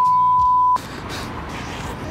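A loud, steady, single-pitched bleep tone edited onto the soundtrack, of the kind used to censor a word, cutting off suddenly after under a second. It gives way to quieter background music over outdoor traffic noise.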